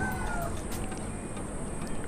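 A faint, thin animal call that falls slightly in pitch and fades within the first half-second, over low background noise.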